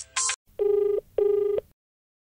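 Telephone ringing tone on an outgoing call: two short steady beeps in quick succession, the double-ring pattern of a ringback tone.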